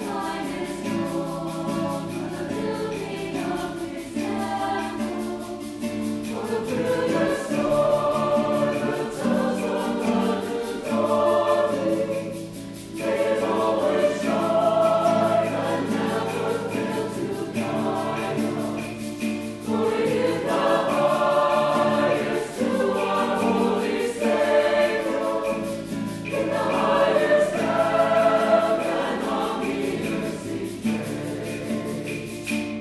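Mixed choir singing in long held phrases, with a low steady accompaniment underneath.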